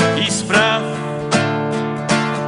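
Classical guitar played with strummed chords, three struck chords ringing on, with a wavering sung note from a man's voice about half a second in.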